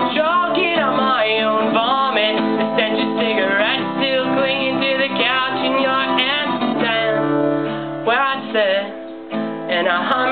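Acoustic guitar strummed in steady chords, with a voice singing along. The playing thins out briefly near the end before picking up again.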